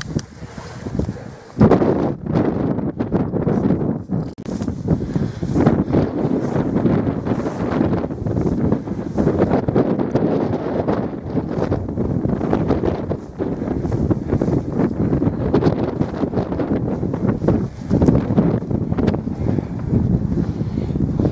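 Wind blowing across the camera's microphone in uneven gusts, jumping up loudly about a second and a half in and staying strong.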